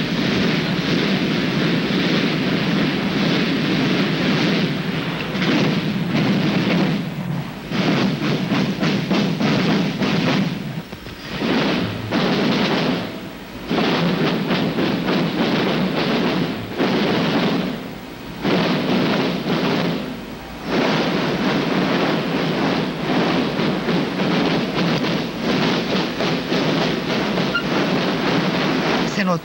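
A large corps of marching field drums playing a fast march cadence together, with dense rapid strokes. There are several short breaks of under a second in the drumming.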